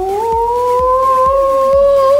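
A child's long, held "ooooo" vocalisation that rises slowly in pitch, over background music.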